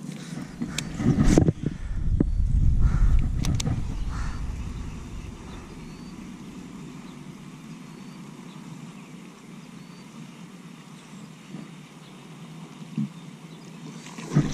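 A baitcasting rod and reel being cast and retrieved, with sharp clicks and rumbling handling noise in the first few seconds, then a quieter steady whir as the line is reeled in. A faint short high chirp repeats about once a second.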